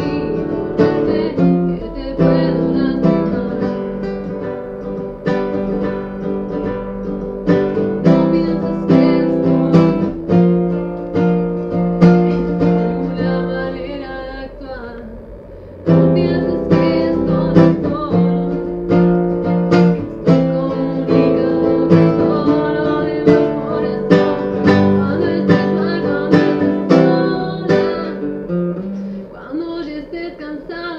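A woman singing while strumming chords on an acoustic guitar. About halfway through the playing dies away for a moment, then comes back strongly.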